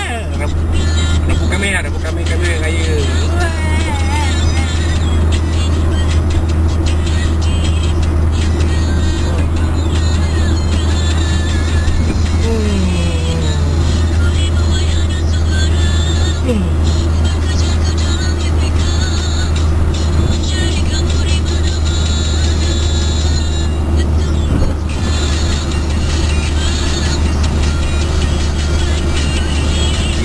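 Steady low drone of a car cabin at highway speed, with music and a singing voice playing over it.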